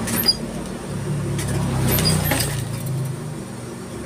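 Industrial sewing machine running as bias binding is stitched onto fabric: a steady motor hum, strongest in the middle, with a few light clicks.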